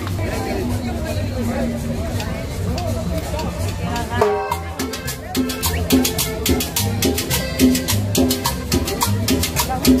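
Live cumbia band playing, with accordion, double bass, conga drums and drum kit. The percussion beat comes in strongly about five seconds in.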